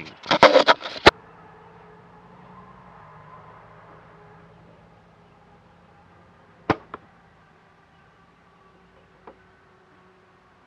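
Loud knocks and rustles of the camera being handled at the start. A few seconds later a compound bow is shot with a finger release: a sharp snap of the string, then a fainter smack about a quarter second later as the arrow hits the target.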